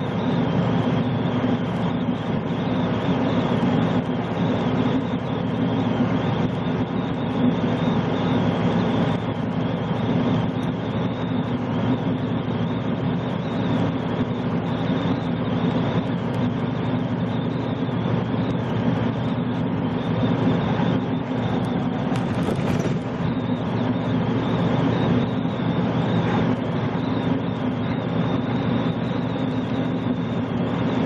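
Steady in-cab drone of a semi truck cruising at highway speed: low diesel engine hum under continuous tyre and road noise.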